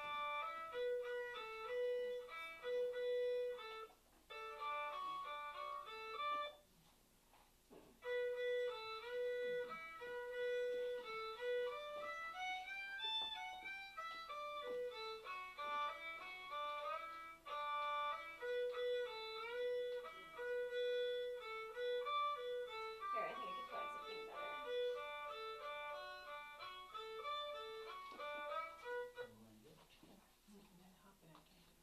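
Recorded Irish dance music, a melodic tune, played back from a phone. It breaks off briefly about four seconds in and again for over a second around seven seconds, then plays on and fades near the end.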